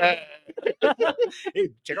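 Men's voices at a close microphone: a drawn-out, wavering shout fades out, followed by a run of short bursts of laughter and the start of a spoken word near the end.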